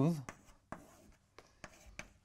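Chalk on a blackboard while writing: a few faint taps and scrapes as the strokes of an equation go down.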